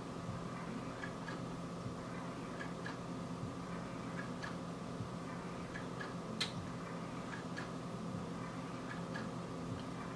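Faint, regular ticking, roughly two ticks a second, over a steady low hum of room tone, with one sharper click about six seconds in.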